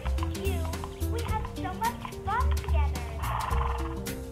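Tek Nek Thunder Jr talking rocking pony's built-in sound unit playing a short voice clip through its small speaker: high, quavering vocal snippets with a short hissing burst near the end, over steady background music.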